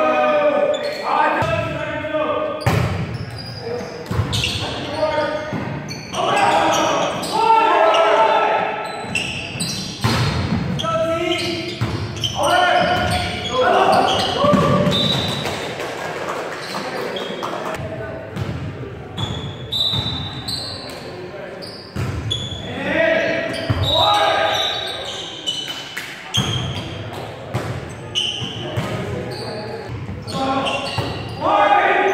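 Players and spectators calling out and chattering in a reverberant gym, with several sharp thuds of a volleyball being hit and bounced on the court.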